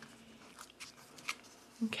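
Faint clicks and paper rustles as a clear acrylic stamp block is pressed onto card stock and lifted off, a few short ticks spread across the moment.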